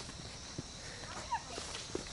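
A few faint footsteps on a rocky dirt trail, over a steady hiss of outdoor background noise.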